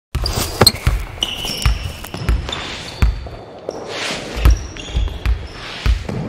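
A basketball bouncing on a hardwood court, about ten irregular thumps, mixed with short high sneaker squeaks.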